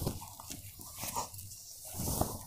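Faint rustling of a cotton silk saree being unfolded and lifted by hand.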